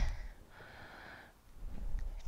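A woman breathing audibly with exertion between reps of kettlebell stiff-leg deadlifts, two breaths in the space of two seconds.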